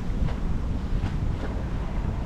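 Wind buffeting the microphone: a steady, rough low rumble.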